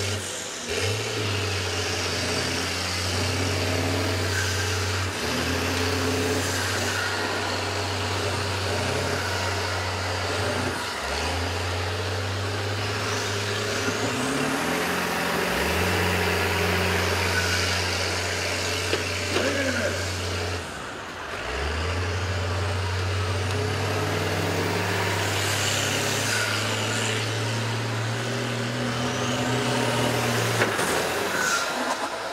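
School bus engine running hard under load during demolition derby pushing, its note dropping and revving back up about three times, over a steady din of noise and a few short knocks.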